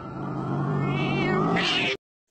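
A drawn-out, cat-like yowling cry on a steady low pitch, rising into a higher shriek near the end and then cutting off suddenly.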